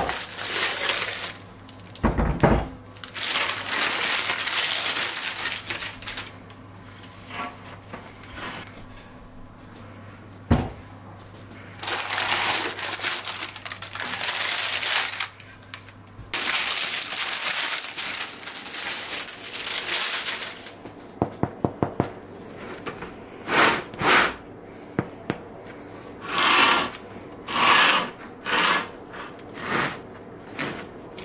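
Baking parchment rustling and crinkling as fresh loaves are handled out of cast-iron pots onto a wire cooling rack, in several stretches, with a few single knocks and a quick run of light taps. A low steady hum stops about halfway through.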